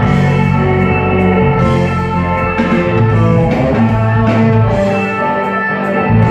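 Live band playing amplified music, with electric guitars, keyboards and a drum kit.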